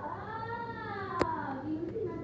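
A long, drawn-out meow-like vocal call that rises and then falls in pitch over about a second and a half, followed by a short rising call near the end.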